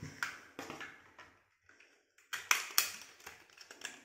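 Small clicks and taps of a plastic lip gloss tube and its cardboard packaging being handled and unpacked by hand. The two sharpest clicks come about two and a half seconds in.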